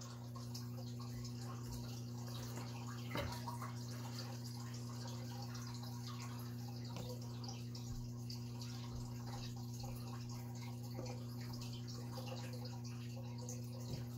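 Rubber letter stamps being pressed onto paper and handled on a tabletop: a few faint, scattered taps, the clearest about three seconds in, over a steady low hum.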